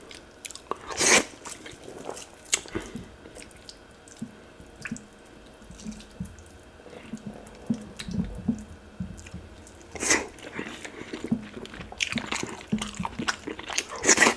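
Bare fingers working fufu and tilapia in a dish of pepper soup, making wet, sticky clicks and squelches. A few sharp clicks come about a second in, softer handling follows in the middle, and a denser, louder run comes near the end.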